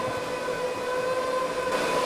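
HPE ProLiant DL560 Gen10 rack server's cooling fans running fast, a steady whir carrying a constant high whine.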